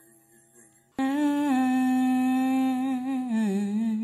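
A voice humming one long held note that starts abruptly about a second in, then steps down in pitch and wavers near the end.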